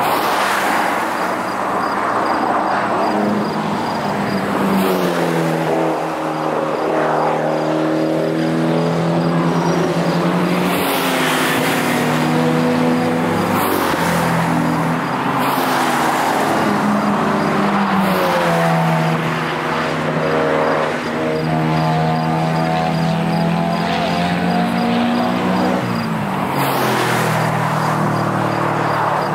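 Cars at track speed driving through a corner and down the straight one after another, their engines revving with the pitch climbing and falling continuously, with tyre and road noise underneath.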